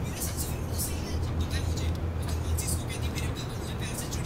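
A man talking, the voice of an online video playing on a laptop, over a steady low hum.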